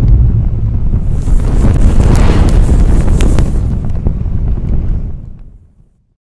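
Intro sound effect for a burning-logo reveal: a loud, deep rumbling rush with sharp crackles through the middle, fading away about five and a half seconds in.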